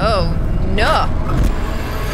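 Horror-trailer soundtrack: a voice makes two short, sliding vocal sounds about a second apart over a steady low rumble.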